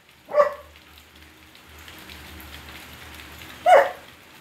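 Basset hound whining in two short cries, a brief one about half a second in and a louder, falling one near the end, with a faint steady hiss between them.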